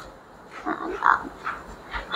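A child's voice making a few short, quiet murmurs or grunts while hesitating over an answer.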